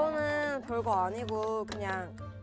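Women speaking Korean in a lively, high-pitched exchange, with a faint steady low hum underneath.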